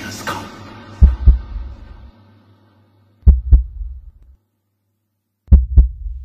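Low double thumps in a slow heartbeat rhythm: three pairs, each two beats close together, about two and a quarter seconds apart, while the music underneath fades away.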